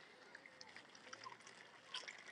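Near silence: faint outdoor ambience with a few small, faint ticks.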